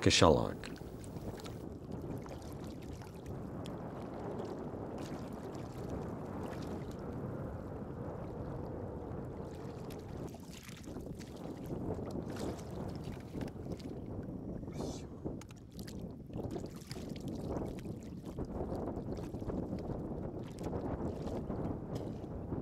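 Wind on the microphone over shallow seawater, with irregular splashing and sloshing from rubber boots wading through it, more frequent in the second half.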